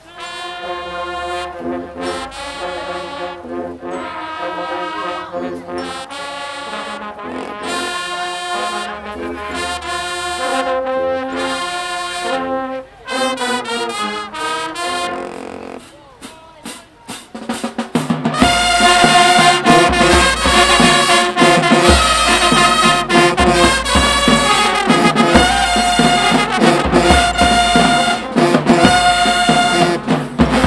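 High school marching band playing in the stands: trombones, trumpets and sousaphones with saxophones and flutes. A moderate held brass passage thins out briefly, then about eighteen seconds in the full band comes in much louder over a heavy pulsing bass beat.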